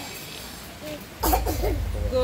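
A person coughs once, sharply, a little over a second in. A low rumble starts at the same moment.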